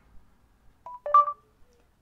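Electronic beeps from a Samsung Android phone about a second in: a brief single tone, then a click and a short two-note tone, the kind of prompt tone that signals the phone's voice input is ready to listen.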